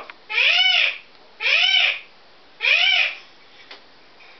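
Hyacinth macaw calling: three loud, drawn-out calls about a second apart, each rising then falling in pitch.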